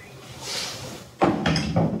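Handling noise at a workbench: a soft rustle, then about a second in a sudden knock followed by shuffling as a metal clutch pedal is put down on the wooden bench.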